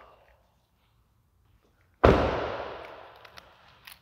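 Near silence, then about two seconds in a single sharp bang of a car door being shut, its echo dying away over a second or so.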